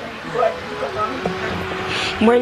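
A woman speaking in Nepali in short, broken phrases, with a faint steady hum underneath.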